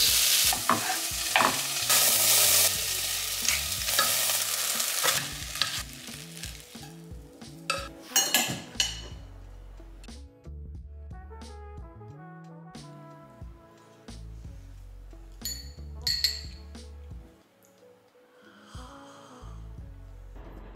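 Diced vegetables (zucchini, carrots, peas, sweetcorn) sizzling in a pot as they are stirred with a spatula. The sizzling stops after about five seconds, leaving much quieter sounds with a few sharp clicks.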